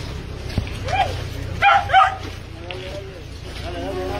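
Mixed-breed dog crying in short, high, rising-and-falling whines and yelps, once about a second in and again louder around two seconds in, in distress.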